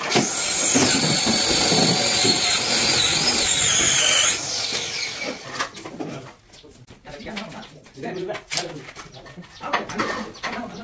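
Power drill running under load for about four seconds, its pitch wavering, then stopping. Scattered light knocks follow.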